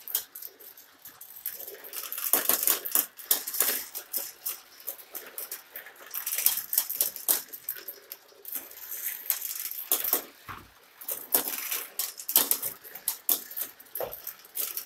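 GraviTrax marble run with several marbles rolling and clattering through the plastic track pieces, heard as irregular bursts of rapid clicks.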